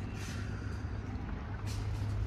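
Electric motor of an aftermarket power driver's seat in a Hyundai Creta running steadily with a low hum as the switch is held and the backrest reclines.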